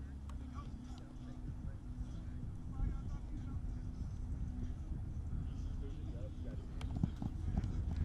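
Rapid footfalls of football players running and cutting on artificial turf, with distant voices from people around the field and a few sharp clicks near the end.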